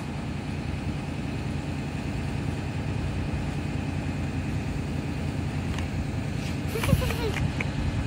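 School bus engine idling at the curb: a steady, even low rumble. A brief knock and a short voice sound come about seven seconds in.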